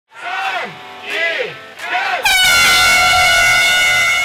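Voices shout three short calls, then hand-held canister air horns blow one long, steady, loud blast about two seconds in, sounding the start of a mass running race.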